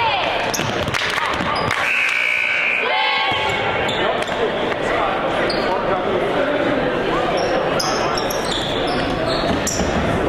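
Basketball game sound in a gym: voices and crowd chatter echoing in the hall, with a basketball bouncing. A single steady whistle blast, about a second long, sounds about two seconds in.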